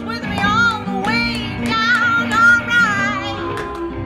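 A woman sings a bluesy vocal line with a wavering vibrato over a cigar box guitar and an electric guitar. She sings several short phrases, then holds a last note that slides down near the end.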